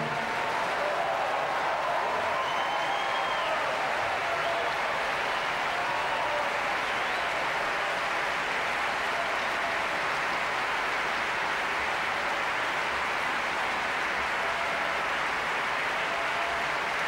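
Concert audience applauding steadily. The applause breaks out as the last sung chord of the song cuts off at the start.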